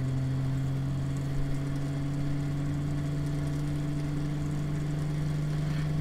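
Bedini SSG pulse motor with a six-ferrite-magnet rotor running with a steady hum. The hum creeps slightly up in pitch as the motor speeds up while the potentiometer is turned to add resistance.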